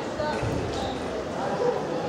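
Indistinct voices talking in a large sports hall, many at once, with a low thud about half a second in and a few scattered clicks.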